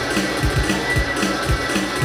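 Live band playing an instrumental passage without vocals: amplified electric guitars over drums with a steady beat and cymbal ticks.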